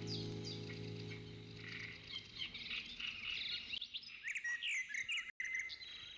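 Birdsong laid into the end of a recorded track: many quick chirps and short gliding whistles, quiet, while the last held music notes fade out over the first two seconds.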